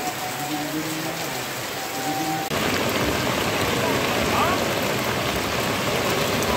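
Heavy rain pouring onto a flooded street, a steady hiss of water. About two and a half seconds in, it jumps abruptly to a louder, closer downpour.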